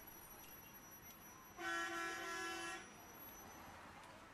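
A vehicle horn honks once, a steady single-pitched toot lasting about a second, heard from inside a car, with faint traffic noise otherwise.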